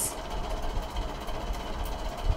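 Low, steady background rumble with faint hiss, and no distinct sound event: room noise in a pause between speech.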